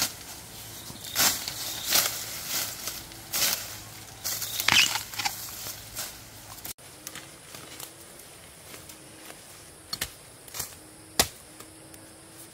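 Dry bamboo leaves and stalks rustling and crackling as a person pushes through bamboo undergrowth picking bamboo shoots: a busy run of crackling bursts for the first six and a half seconds, then quieter, with a few sharp snaps.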